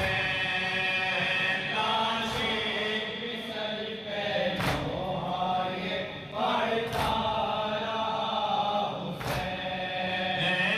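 A group of men chanting a Muharram noha together, with a sharp unison slap of hands on chests (matam) four times, about every two and a half seconds, in time with the chant.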